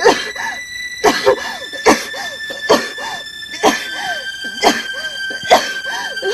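A person coughing over and over, about one cough a second, each cough followed by a short hoarse sound.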